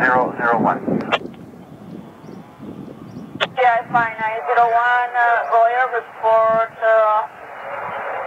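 Air traffic control radio chatter: a thin, narrow-band voice over the VHF radio, opening with a click about three and a half seconds in, over low background noise. It is preceded by a brief voice and a stretch of hiss.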